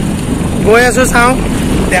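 Steady low rumble of wind buffeting the microphone, with a man's voice breaking in briefly about a second in.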